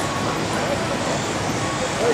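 Indistinct voices over a steady noise.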